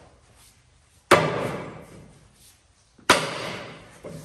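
Two heavy blows from a large rubber mallet swung two-handed against a wooden lever plank, about two seconds apart. The blows are driving a part out of a Chieftain tank gearbox. Each blow rings on and dies away over about a second.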